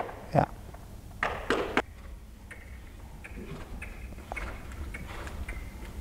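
A horse's hooves striking sand arena footing, a few faint, irregularly spaced soft knocks and ticks.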